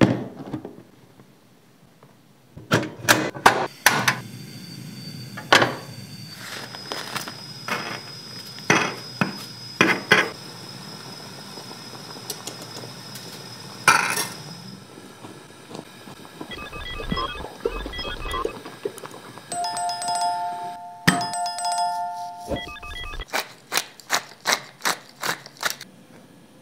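A string of kitchen handling sounds. A hard plastic portable gas stove case is set down on a stone countertop with a thunk. Clicks and knocks follow, then dry spaghetti drops into a metal pot with a clatter about halfway through, and a quick run of sharp ticks comes near the end.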